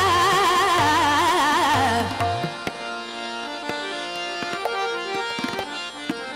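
Hindustani khayal in Raga Bhoopali: a woman's voice sings a wavering, ornamented phrase over low bass strokes of the tabla. About two seconds in the voice stops, and tabla strokes carry on over held stepwise harmonium notes and the tanpura drone.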